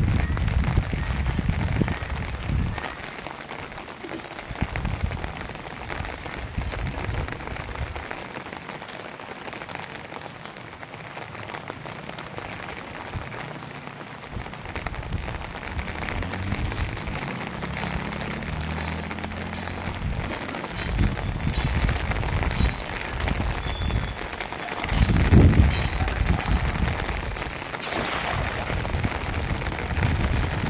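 Steady rain pattering on a pond and wet grass, with low gusty rumbles on the microphone now and then. Near the end comes a brief splash as a cast net lands on the water.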